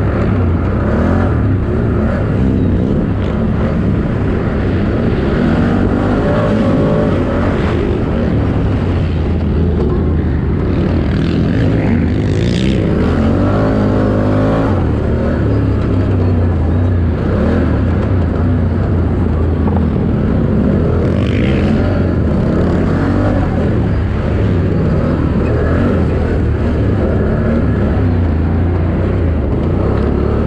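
Engine of a 4x4 race quad running hard under load, its revs rising and falling with the throttle over rough ground.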